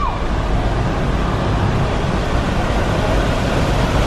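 Steady road and wind noise of a car moving along a road, heard from inside the vehicle.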